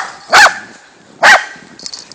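Welsh corgi barking defensively at a larger dog: three short, sharp barks, the first right at the start, the next two under half a second and about a second apart.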